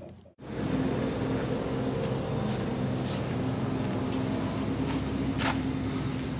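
A steady low mechanical hum with several held tones, with a few short clicks or knocks, one about three seconds in and another about five and a half seconds in.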